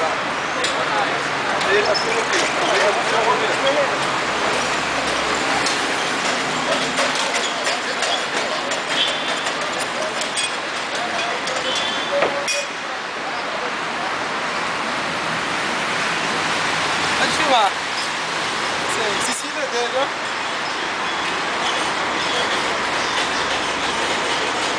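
Busy city street ambience: a steady wash of traffic noise and indistinct voices of people nearby, with scattered small knocks and clicks. A short rising squeal about two-thirds of the way through is the loudest moment.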